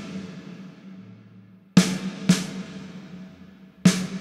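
Snare drum hits played back through the Valhalla VintageVerb plugin's chamber reverb. Each hit is followed by a long reverb tail that dies away, its highs damped by a high-shelf cut of −24 dB. There are two hits close together about two seconds in and one more near the end, and the tail of an earlier hit fades at the start.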